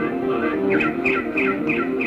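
Live rock band music, instrumental: short, high, falling notes repeat about three times a second over sustained lower chords.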